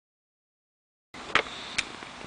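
Silence for about a second, then a steady background hiss with two sharp clicks about half a second apart.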